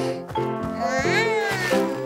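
Bright children's cartoon background music, with a cartoon kitten's short, meow-like voiced sound about a second in that rises and then falls in pitch.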